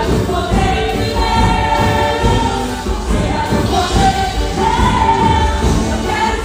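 A woman singing a gospel hymn into a handheld microphone, amplified through the church PA, with the congregation singing along.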